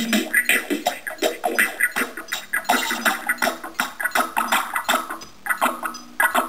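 Electronic music played live on a Korg synthesizer sequenced from an Apple IIe over MIDI: a busy rhythmic pattern of short percussive hits and synth sounds. It sounds thin, with almost no bass, and thins out briefly near the end.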